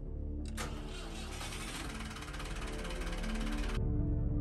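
Boat's inboard engine started with the ignition key: the starter cranks for about three seconds, then the engine catches and runs with a low rumble near the end.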